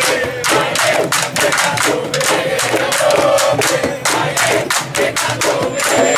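Candombe drum ensemble, a group of tambores struck with a stick and the bare hand, playing a dense, continuous rhythm, with shouting voices among the drums.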